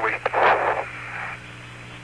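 Apollo 15 lunar-surface air-to-ground radio: one spoken word, a short burst of hiss, then steady radio hiss over a low hum.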